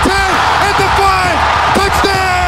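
Excited shouting with long, drawn-out, falling calls over a cheering stadium crowd, as a player breaks away.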